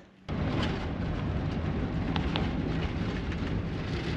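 Cab noise of a 28 ft Class C motorhome driving on a bumpy dirt road: a steady rumble of the engine, tyres and body that begins abruptly just after the start.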